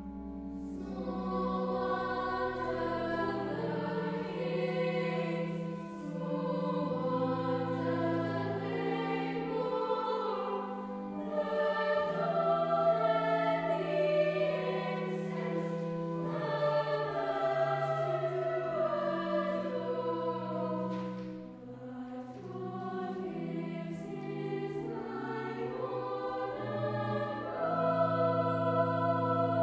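A children's chapel choir singing a carol in upper voices, accompanied by sustained low notes that sound like an organ, with a brief dip between phrases about three-quarters of the way through.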